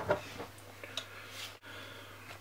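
Faint handling noise of a stiff bumper being stretched and pressed onto an iPad mini case by hand: soft rubbing with a light tick about a second in, over a low steady hum.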